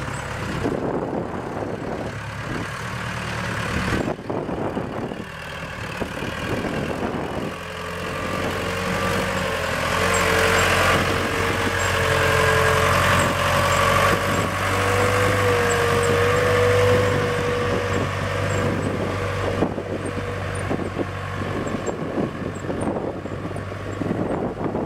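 A 1989 Case 580K backhoe's Case 4-390 four-cylinder diesel engine running as the machine drives past. It gets louder through the middle, with a steady whine while it is closest, then fades as it drives away.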